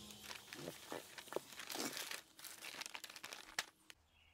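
Faint, irregular crinkling and rustling of clear plastic packaging bags being handled while unpacking.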